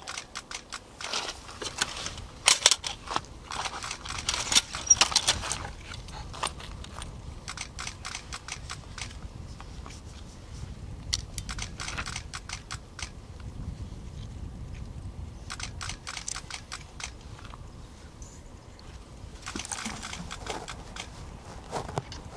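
Camera shutters firing in rapid bursts: several runs of quick clicks, each lasting a second or two, over a faint low rumble.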